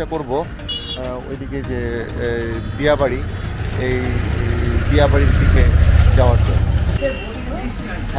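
A small truck driving past on the road, its low rumble building, loudest about five to six seconds in, then fading. Background music with singing plays over it.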